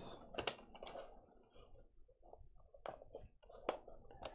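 Faint handling sounds: stiff embroidery backing paper rustling, with a few short clicks as binder clips are fastened onto the metal posts of a cap-frame gauge.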